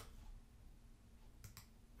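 Near silence, with two faint computer mouse clicks close together about one and a half seconds in.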